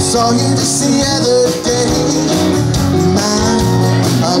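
Live country-style band playing, with acoustic and electric guitars under a sustained melody line.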